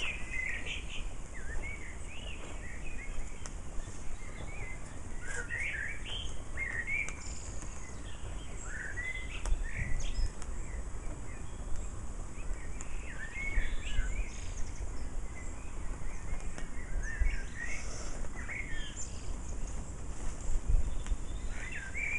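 Small songbirds chirping repeatedly in short rising and falling notes, over a steady low rumble with a few low bumps.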